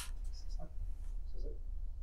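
A pause in a lecture: room tone with a steady low hum, and a faint, brief off-mic voice.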